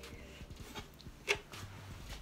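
Faint rustling of wool fibres as a carded art batt is pulled apart along the grain by hand, with one brief louder rustle a little past a second in.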